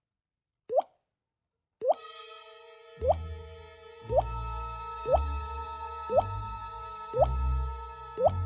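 Water drops plinking from a dripping kitchen faucet, about one a second, at first alone. About two seconds in, held music notes come in under them, and from about three seconds a deep bass note lands with each drip, so the drips become the beat of the music.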